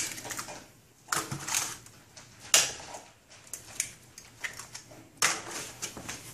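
Eggs being cracked into a plastic measuring jug: a series of sharp cracks and taps of eggshells, the loudest about two and a half seconds in.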